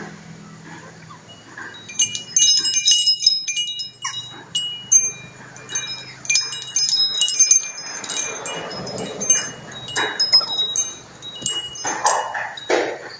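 Small metal bells on a hanging homemade baby toy jingling and chiming in irregular clusters as they are knocked and swing, starting about two seconds in.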